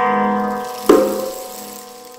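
Guitar chords ringing out in a gap in a band's song: a held chord fades, another chord is struck about halfway, and it too dies away.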